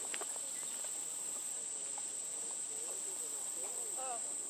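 Insects droning in one steady, unbroken, high-pitched tone.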